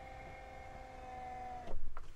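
Electric drop-down bed's lift motor running with a steady whine as the bed rises, cutting off about 1.7 s in, followed by a brief clunk as the bed stops.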